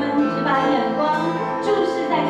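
A worship team singing a song into microphones, with an acoustic guitar accompanying; the melody moves through held, sustained notes.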